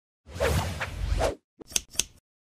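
Logo-intro sound effect: a whoosh lasting about a second, then a couple of quick sharp clicks near the end.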